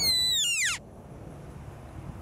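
Sika stag's rutting whistle: one high-pitched call that holds steady, then slides steeply down and stops just under a second in.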